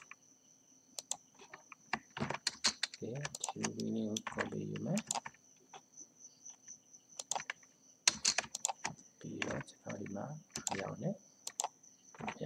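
Computer keyboard typing and mouse clicks in quick irregular runs, with a voice speaking in two short stretches between them and a faint steady high whine underneath.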